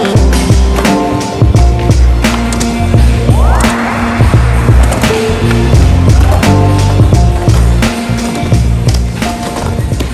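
Music with a heavy bass beat over skateboard sounds: polyurethane wheels rolling on the ramp and wood and metal hitting and grinding along a steel handrail.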